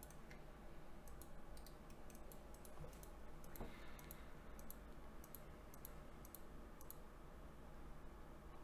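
Faint, irregular light clicking of a computer mouse, many clicks over the first seven seconds, above a faint steady low hum.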